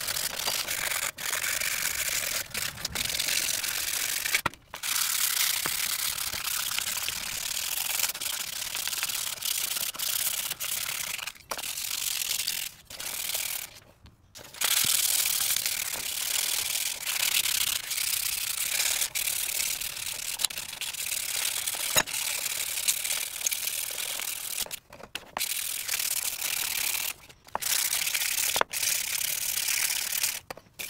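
Wooden palette-knife handles being hand-sanded with 120-grit sandpaper: a steady scratchy rasp of paper rubbing over wood, breaking off briefly a few times between strokes.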